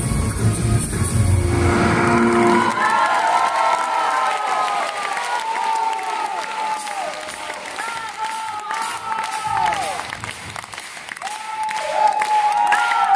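A live rock band with drums plays the final bars of a song and cuts off about two and a half seconds in. A concert audience then applauds and cheers, with many voices calling out over the clapping.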